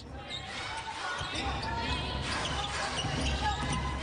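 A basketball being dribbled on a hardwood court, with players' and coaches' voices calling out in a large, almost empty hall, and short squeaky tones over a steady low background.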